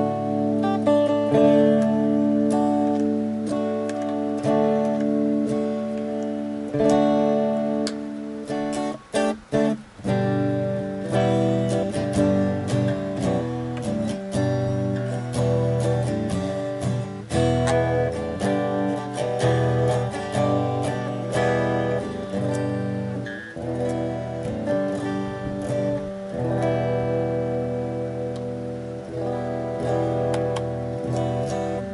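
Cort X-6 VPR electric guitar played with a clean tone: ringing chords and picked notes, with a few short, choppy stabs about nine seconds in.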